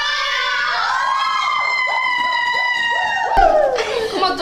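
Several women shrieking together in one long, high-pitched excited cry of greeting, sliding down in pitch near the end.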